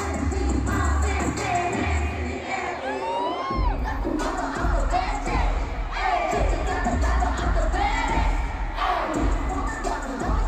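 Live K-pop song played over a stadium sound system, with a heavy bass line and singing, and a large audience cheering over it.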